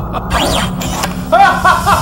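A short sweeping sound effect that rises and then falls in pitch, followed by a rhythmic "ha-ha-ha" laugh of about five pulses a second, over a low steady music drone.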